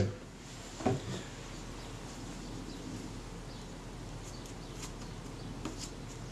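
Quiet steady room hum with faint handling noise: a short soft sound about a second in, then a few light ticks near the end as fingers pick a small piece of viewfinder glass up off a paper tissue.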